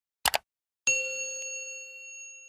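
A quick double click of a button-tap sound effect, then just under a second later a notification-bell ding that rings on with several steady pitches and slowly fades.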